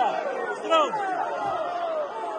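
Several voices talking and calling out over one another, with one higher call a little before a second in.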